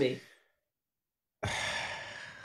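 A long sigh, a breathy exhale that starts abruptly about one and a half seconds in and slowly fades.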